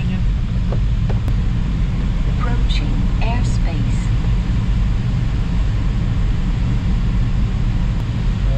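Steady loud drone of airflow and cockpit noise in a glider in flight, even throughout, with a few brief voice fragments a few seconds in.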